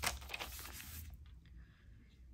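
A paper page of a Hobonichi Weeks Mega planner turned by hand: a brief rustle that dies away about a second in.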